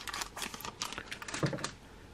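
Foil trading-card booster pack crinkling in the hands, a run of quick small crackles and clicks as it is opened and a laminated card is slid out.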